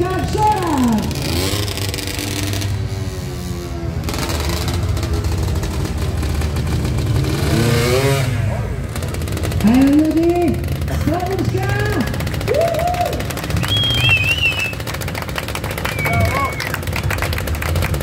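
Sport quad (ATV) engine revving up and down in bursts as it is ridden on two wheels in wheelies, over a steady low engine rumble.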